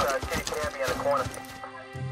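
Running footsteps: a quick series of footfalls that die away about a second and a half in.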